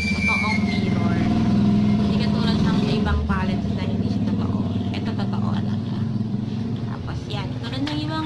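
A motor vehicle's engine running steadily, with a low hum that rises and falls slightly in pitch.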